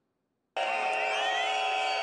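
Protest crowd blowing whistles: many shrill whistle tones sounding at once, some gliding in pitch. It cuts in suddenly about half a second in.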